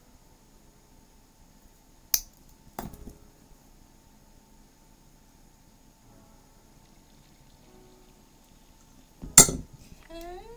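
Small metal jewellery pliers clicking against jump rings and findings: a sharp click a little after two seconds in, another just under a second later, and a louder cluster of clinks near the end.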